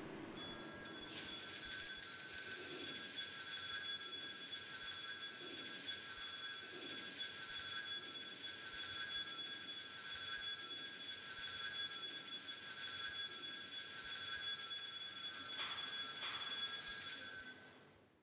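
Altar bells shaken in a continuous bright jingling ring that sets in about a second in, holds steady, and fades out near the end. This is the ringing of the bells at the elevation after the consecration at Mass.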